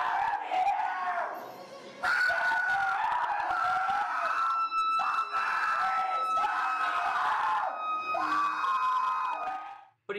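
Repeated high-pitched screams, each lasting under a second, over music that holds one long high note.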